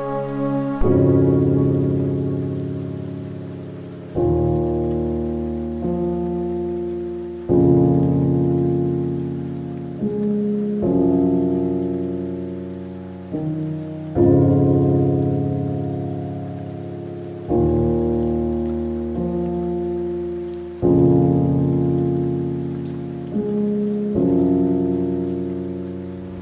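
Slow piano chords, a new one struck about every three seconds and each ringing out and fading, over a steady background of falling rain.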